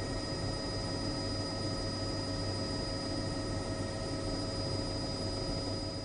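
Helicopter running steadily: a low rotor hum under a constant turbine whine that holds one pitch throughout.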